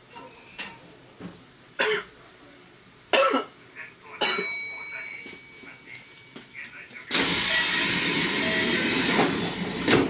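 Electric train standing at a station platform: a few sharp knocks, one followed by a short ringing chime, then about two seconds of loud, steady compressed-air hiss near the end.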